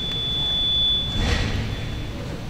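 High, thin whistle of PA microphone feedback holding one pitch, swelling for about a second and then fading out. A short low rumble comes in as the whistle dies away.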